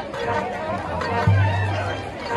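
High school marching band playing its halftime show, with a loud low held note coming in just past the middle, under chatter from spectators nearby.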